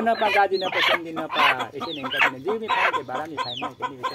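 A white rooster held in the hands clucking with short high calls, over a man's voice chanting without pause.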